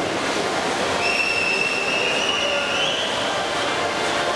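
Swimming-pool din of freestyle swimmers splashing and crowd noise in an indoor pool hall. About a second in, a high, steady whistle cuts through for about two seconds, rising slightly at its end.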